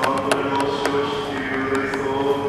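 Orthodox liturgical chanting: a voice holding long, steady notes in a reverberant church. A few sharp clicks come near the start, and another one or two later.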